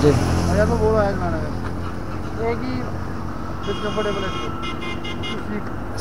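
A motorcycle engine idling steadily under traffic noise. About four seconds in, a vehicle horn honks for under a second, then gives several short toots.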